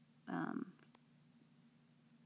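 A short murmured syllable from a woman's voice, then a single faint click of a stylus on a tablet screen as a digit is handwritten. Otherwise low room tone.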